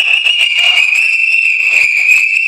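Whistle blown in one long, steady, high-pitched blast, signalling the fighters to stop the kumite bout.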